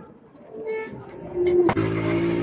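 Low cooing of a dove, two short held calls in the first part. About three-quarters of the way in comes a sudden sweep, and background music with long held notes starts and is louder than the cooing.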